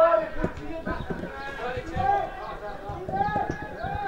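Men's voices shouting and calling across an open football pitch, the loudest calls about two and three seconds in, with a few short knocks in the first half.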